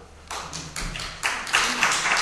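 Audience applause starting: a few separate claps that quickly thicken into steady clapping, right after the end of a poem.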